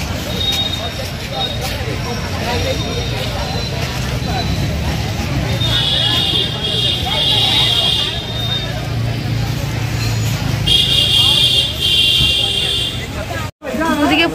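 Busy street ambience: crowd chatter over a steady low traffic rumble, with a shrill, steady high tone sounding twice, about six seconds in and again near eleven seconds. The sound cuts off abruptly just before the end.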